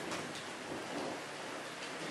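Steady, even hiss of background noise with no clear events in it.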